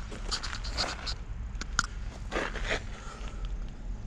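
Footsteps and shuffling on loose gravel with handling noise from a handheld camera: a few short scuffs and two small clicks over a low steady rumble.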